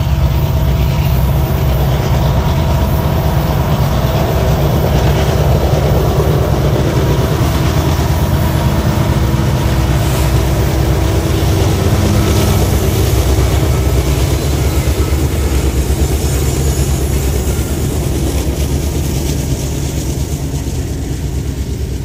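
Two diesel-electric freight locomotives, an EMD SD70ACu and a GE AC4400CW, running at full power up a heavy grade: a loud, steady, deep engine rumble that grows fainter near the end.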